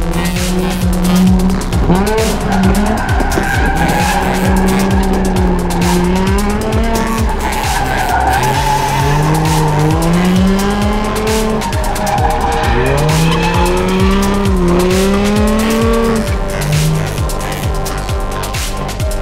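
Nissan 350Z's V6 engine revving up and down repeatedly as the car drifts, with the tyres squealing and skidding on asphalt. Electronic music with a steady beat plays underneath.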